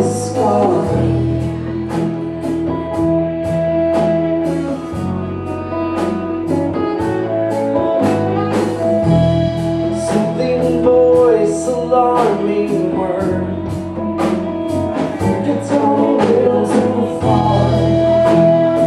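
Live blues-funk band playing: two electric guitars, keyboard, congas and drum kit, with held keyboard chords under a wavering guitar line and a steady beat of drum and cymbal strikes.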